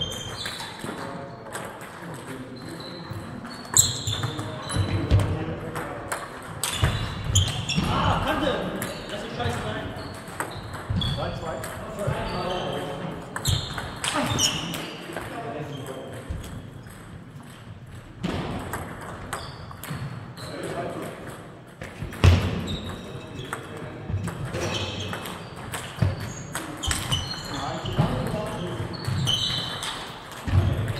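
Table tennis balls clicking off bats and tables in a sports hall: sharp ticks at irregular intervals, over people's voices.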